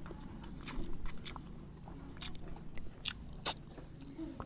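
Close-up eating sounds of a person chewing rice and fish, with scattered short wet clicks from the mouth; the sharpest click comes about three and a half seconds in.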